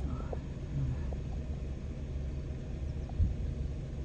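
Large multirotor agricultural spraying drone hovering, its rotors heard as a steady low rumble, with a brief bump about three seconds in.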